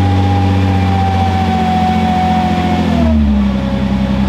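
Nissan R35 GT-R's twin-turbo V6 idling steadily, its pitch easing down slightly about three seconds in.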